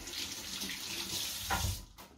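Kitchen tap running into a stainless-steel sink in a steady rush, with a dull knock shortly before the water is shut off near the end.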